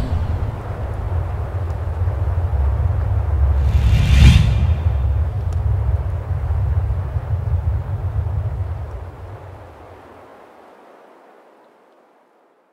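Trailer sound design: a steady low rumble with a single whoosh sweeping through about four seconds in, then the rumble fades out over the last few seconds.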